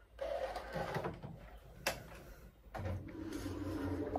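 Kitchen handling noises: rustling and knocks, with one sharp click about two seconds in. A steady low hum starts near the three-second mark and carries on.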